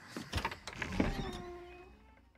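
A door being opened: a few knocks and clicks, then a drawn-out creak that slides down in pitch and fades out near the end.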